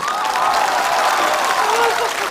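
Large theatre audience applauding steadily, with a man's drawn-out sung cry heard over the clapping and tailing off near the end.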